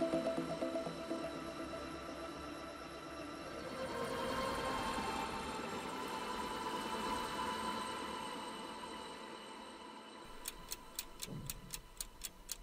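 Soft background music that fades and swells, then a steady clock ticking sound effect starts about ten seconds in, several ticks a second: the quiz's countdown timer.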